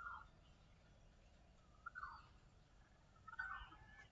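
Near silence with three faint, short bird calls, each falling in pitch.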